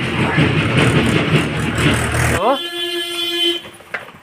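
Motor vehicle engine running, which cuts off abruptly about two and a half seconds in. It is followed by a steady horn-like toot lasting about a second.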